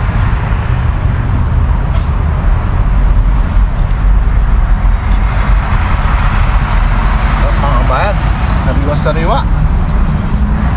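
Loud, steady low rumbling noise with no rhythm, with a short wavering pitched sound near the end.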